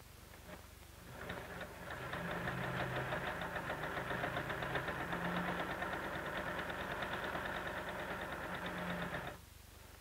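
Electric sewing machine running a long basting stitch down a marked line, with a rapid, even chatter of stitches over a motor hum. It starts about a second in, comes up to speed, runs steadily and stops suddenly near the end.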